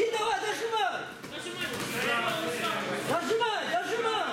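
Several men shouting at once at ringside during a boxing bout, their voices overlapping so that no words stand out.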